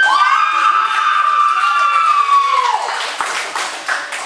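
A spectator's long, high-pitched yell, held for nearly three seconds and sliding slightly down before it breaks off, followed by scattered clapping.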